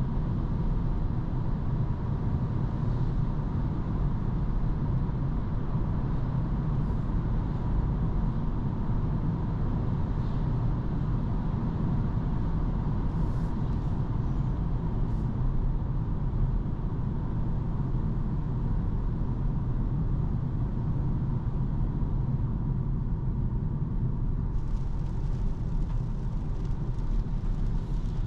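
Steady road and tyre rumble with a low engine hum, heard inside the cabin of a petrol Opel Corsa driving through a road tunnel. About three-quarters of the way in, a brighter hiss of tyres on a wet road joins in.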